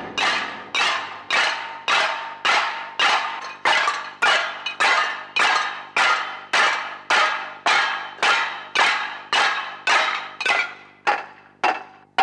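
Many metal plates beaten with spoons in unison: a ringing clatter about twice a second, in a steady even beat.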